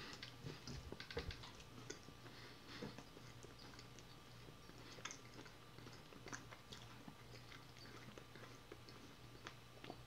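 Faint, soft chewing: a person bites into a small moon pie and fried Spam sandwich and chews it, with scattered small mouth clicks. The clicks are a little thicker around the bite near the start.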